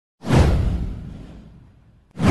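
A whoosh sound effect with a deep low rumble under it, starting sharply about a fifth of a second in, sweeping down in pitch and fading out over about a second and a half.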